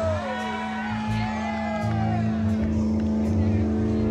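Live blues-rock band playing a song's intro: a held low note and pulsing bass and drums, with a wailing line that slides up and down in pitch for the first two seconds, then a sustained chord.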